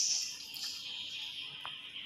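Cardboard watch-box packaging being handled: a soft rustle at the start that fades out, then low background noise with one faint click.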